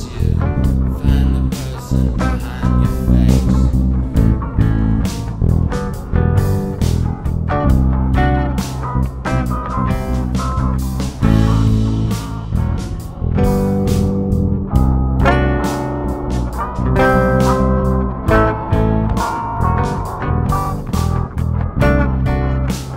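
Instrumental passage of a rock jam: guitar playing over bass guitar, with a steady beat of sharp hits and no singing.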